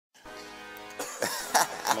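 A steady held musical tone from the backing track starts the clip. About a second in, a man's voice comes in with a short cough near the middle of the second half.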